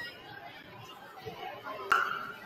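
Indistinct chatter of many voices echoing in a gymnasium, with one sharp smack near the end.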